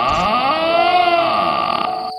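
A sound effect with many overtones whose pitch rises and falls back in one slow arch, over a steady high thin tone in the background.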